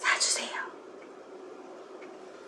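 A woman's short whisper in the first half second, then quiet room tone.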